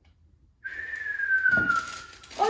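A single whistled note starting about half a second in and sliding slowly down in pitch for about a second and a half.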